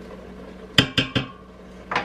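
A stirring spoon knocking three times in quick succession against the stainless-steel inner pot of an Instant Pot, about a second in, the knocks a fifth of a second apart.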